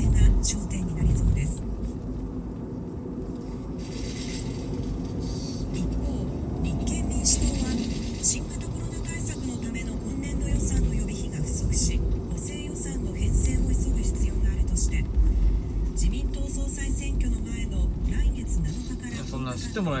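Steady engine and road rumble inside a moving car. A news broadcast with music plays indistinctly over it.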